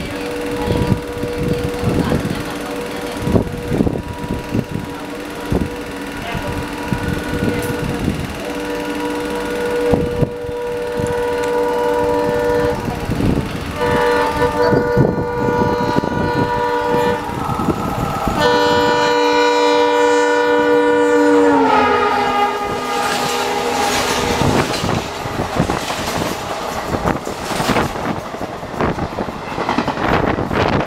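Horn of an Indian Railways WDP4 diesel locomotive hauling an express at about 110 km/h, sounding almost non-stop in long blasts with short gaps as it closes in. Its pitch drops as the locomotive passes, about 21 seconds in. The coaches then rush past close by with loud rattling wheel clatter.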